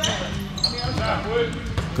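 A basketball dribbled on a hardwood gym floor, a few separate bounces, with short high sneaker squeaks and players' voices in the background.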